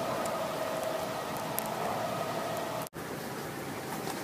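Steady hiss of outdoor background noise with a faint held tone, both broken by a brief dropout about three seconds in, after which the hiss continues without the tone.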